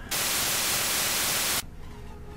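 Television static sound effect: a steady white-noise hiss lasting about a second and a half, which stops abruptly.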